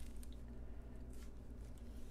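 Faint crinkling and rustling of blue painter's tape as it is pulled off a monitor mount and crumpled by hand, over a low steady hum.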